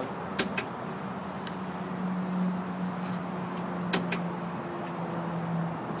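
A parking-gate ticket dispenser being test-run: a few sharp clicks, about half a second in and again around four seconds, over a steady low hum.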